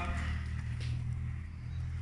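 A steady low hum with no distinct event.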